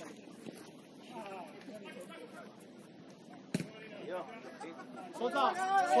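Faint shouts of players on a football pitch, with a single sharp knock of the ball being kicked about three and a half seconds in; the voices grow louder near the end.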